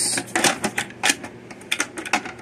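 Irregular clicks and light knocks of hard plastic as the housing and lid of a Seachem Tidal 110 hang-on-back aquarium filter are handled and turned over.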